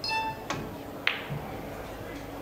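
A pool shot: the cue tip strikes the cue ball about half a second in, and a sharper click of ball striking ball follows about half a second later. A short high tone sounds at the very start.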